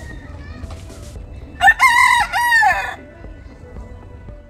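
A white rooster crowing once: a loud cock-a-doodle-doo of several linked notes, lasting just over a second and starting about a second and a half in.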